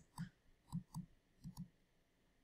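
Faint, short clicks, about six in two seconds and irregularly spaced, from a stylus tapping and dragging on a drawing tablet while a word is handwritten.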